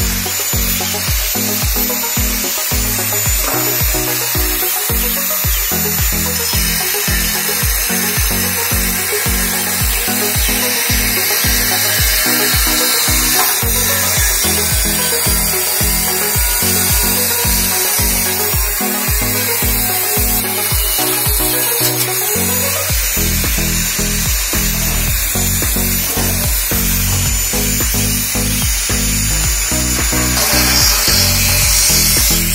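Angle grinder cutting into a stainless steel beer keg, a steady high-pitched whine and grinding, heard together with background music that has a steady beat.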